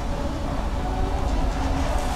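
News programme background music: a deep, steady low rumble with faint sustained notes above it.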